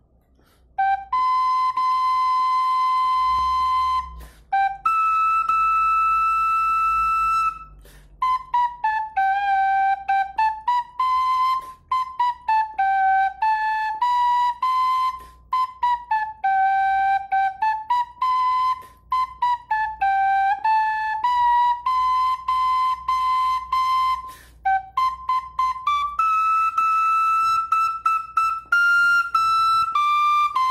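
A small flute playing a simple pasacalle tune one note at a time, beginning about a second in with two long held notes and then a stepping melody broken by short breaths.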